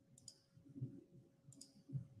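Two faint computer mouse clicks about a second apart, over a faint steady hum.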